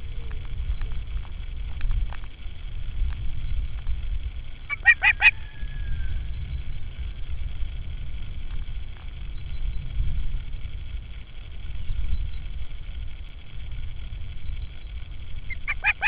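Osprey calling: a short burst of about five high chirps about five seconds in, then a louder, rapid run of calls starting just before the end. Wind rumbles on the microphone throughout.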